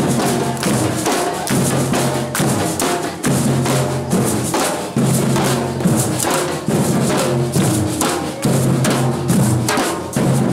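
Drum-led music: bass drums and other percussion keep up a steady, driving rhythm, with some pitched notes underneath.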